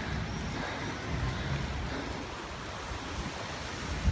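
Steady rush of wind on the microphone of a camera on a moving bicycle, with a low rumble underneath.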